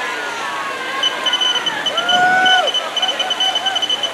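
Spectators talking and calling out, one voice holding a long call about two seconds in, while a rapid string of short high electronic beeps starts about a second in: the race's chip-timing system beeping as runners cross the finish mat.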